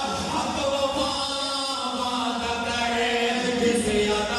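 Men singing a Punjabi naat into microphones, holding long drawn-out notes.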